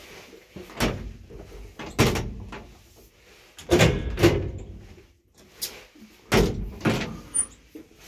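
Old IFMA T46 traction elevator's doors and car giving a series of heavy clunks and bangs, each with a short rumble after it. The loudest come about two seconds in and as a double bang around the four-second mark.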